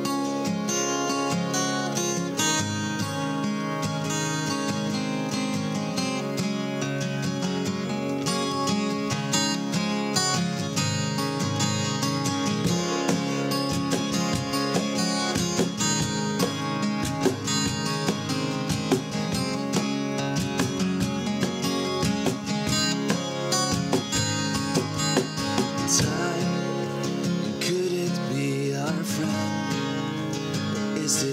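Acoustic guitars strumming chords in a steady, regular rhythm: the instrumental opening of a song, before the vocals come in.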